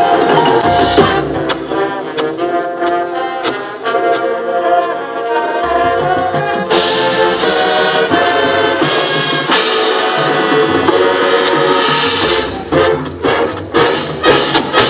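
High school marching band playing its field show: sustained brass chords over front-ensemble and drum percussion, getting brighter about halfway through, with sharp drum strikes coming thick and fast near the end.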